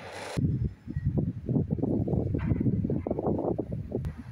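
Wind buffeting the microphone: an irregular, gusting low rumble that starts abruptly about half a second in, after a brief hiss.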